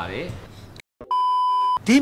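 Electronic beep: one steady tone of a single pitch, about two-thirds of a second long, at an even level. It starts just after a brief drop to silence about a second in.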